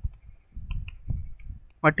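A few short faint clicks over low, uneven rumbling bumps, the desk-side sounds of words being hand-drawn on screen with a pointing device. A man's voice says "what" near the end.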